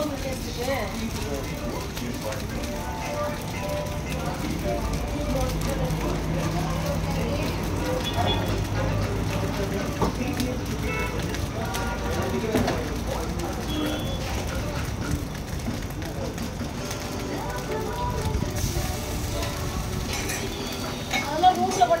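Food stall ambience: people talking in the background over a steady low rumble, with faint music.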